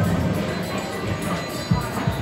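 Slot machine's bonus-round music playing while free spins pay out, over gaming-hall background noise.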